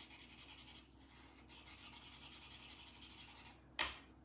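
Chalk pastel stick rubbing and scratching on paper in quick, faint back-and-forth strokes, with brief pauses. A single sharp tap near the end.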